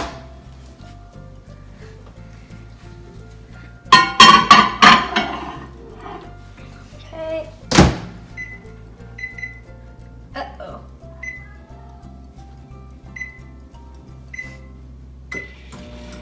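Over-the-range microwave oven being loaded and set: the door shuts with a sharp thunk about eight seconds in, followed by a string of short high keypad beeps as the time is entered. A louder jumble of sound comes about four seconds in.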